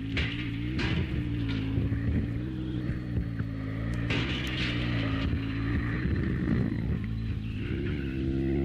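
Experimental noise-drone music: a dense, steady low drone of several held tones, with hissy noise flares above it, the strongest a little after four seconds in. Near the end the drone's pitch bends upward.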